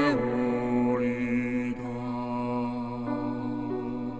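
A Buddhist monk singing in a slow, chant-like style: his voice slides down at the start, then holds one long low note.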